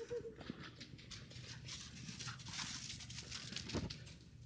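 A dog's short whine at the start, then steady crunching steps through a thin layer of snow, with a soft thud near the end.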